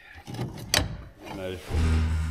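A single sharp metallic click as the air cart's seed meter housing is handled, with faint voices around it. Background music with a steady low note comes in near the end.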